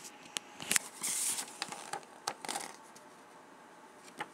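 A paper page of a picture book being turned: a few light clicks and a brief rustle about a second in, then a couple more clicks of handling.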